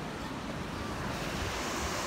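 Ocean surf washing in a thin sheet over wet beach sand, a steady hiss that grows louder and brighter about a second in, with wind rumbling on the microphone.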